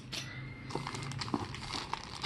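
Plastic packaging crinkling and rustling as it is handled, with small irregular clicks and crackles.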